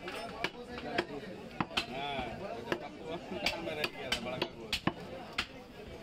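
Butcher's cleaver chopping beef on a round wooden log chopping block: about ten sharp strikes at an uneven pace.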